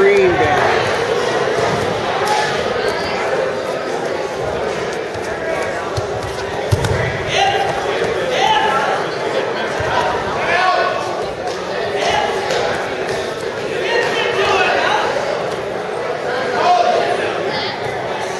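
Spectators and coaches at a wrestling match calling out in short bursts in an echoing gym, with thuds of the wrestlers hitting the mat, the sharpest about seven seconds in. A steady hum runs underneath.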